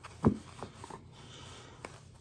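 Faint rustling of a stack of chrome trading cards being squared up in the hands, with one light tap near the end.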